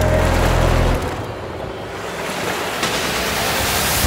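Ocean surf sound effect played over an arena sound system: a rushing wash of waves that swells slowly after the deep bass of the music cuts out about a second in.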